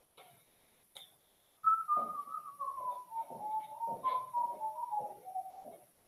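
Someone whistling a slow tune that falls in pitch, starting a little under two seconds in and lasting about four seconds, over a few soft knocks.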